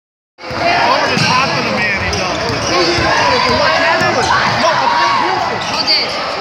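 Basketball game in a gym: a basketball bouncing on the hardwood court amid a steady mix of players' and spectators' voices.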